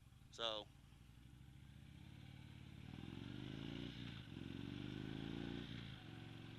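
2014 Indian Chief Vintage's air-cooled Thunder Stroke 111 V-twin accelerating away, fairly quiet. Its pitch rises, drops sharply at a gear change about four seconds in, then climbs again and eases off near the end.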